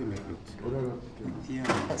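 Indistinct speech at a low level, in short fragments.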